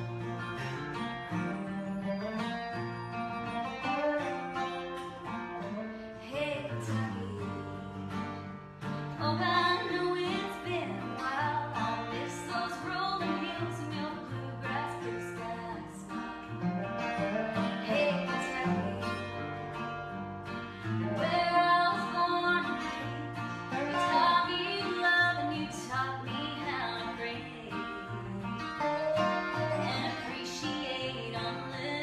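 Acoustic string-band music: two acoustic guitars and a mandolin playing the instrumental opening of a country-bluegrass song.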